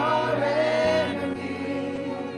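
Gospel worship singing by a small group of singers over a low sustained accompaniment, one long held note ending about a second in.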